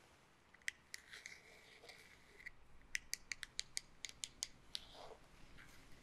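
Quiet, crisp clicks and light scratching from a bristle hairbrush worked close to the microphone, with a quick run of about a dozen clicks in the middle.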